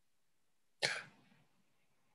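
A person's single short cough about a second in.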